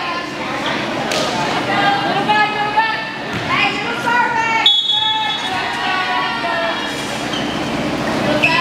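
Several voices of volleyball players and spectators calling out and chattering in a large gym hall, overlapping throughout. A bit past the middle, a short, shrill referee's whistle sounds, the signal for the server to serve.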